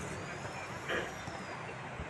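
Steady outdoor background noise with a faint high-pitched whine that rises and then falls, and a short burst, like a voice, about a second in.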